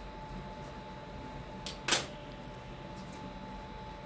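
One sharp snip of scissors cutting paper about two seconds in, with a fainter click just before it, over quiet room tone.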